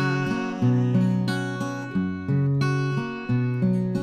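Acoustic guitar strumming chords in a steady rhythm, with a fresh strum about every two-thirds of a second and no singing.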